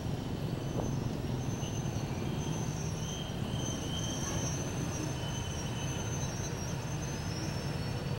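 Passenger coaches rolling slowly past on the track, a steady rumble of wheels on rail with thin, intermittent high squeals from the running gear as the train runs into the station.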